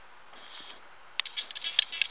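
A near-silent pause, then a quick run of small, sharp clicks and ticks, about a dozen in the last second.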